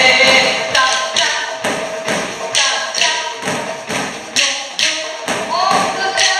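Drumsticks striking exercise balls in unison, sharp hits at a steady beat a little under a second apart, over background music.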